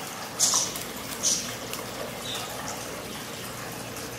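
Two short crisp swishes of a comb drawn back through wet hair, about half a second and about a second and a quarter in, over a steady faint hiss.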